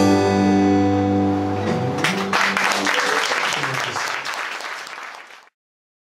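A band's final chord on acoustic guitar, electric guitar and double bass ringing out, then applause from a small audience starting about two seconds in, fading and cutting off suddenly just before the end.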